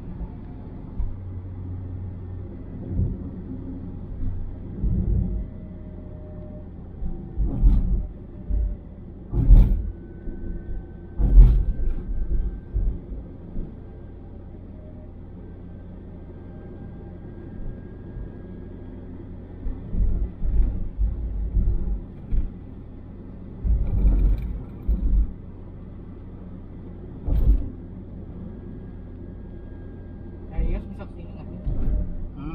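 A car cabin on a motorway: a steady low rumble of engine and tyres, broken by irregular thumps and knocks as the car runs over bumps in the road. The thumps come in clusters, the loudest about 8 to 12 seconds in, then again later.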